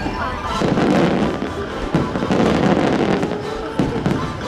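Aerial fireworks shells bursting, with sharp bangs about two seconds in and again near the end, mixed over the show's music soundtrack.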